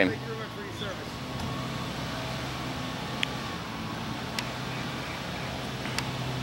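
A minivan's engine running steadily at idle in a low, even hum, with two faint clicks past the middle.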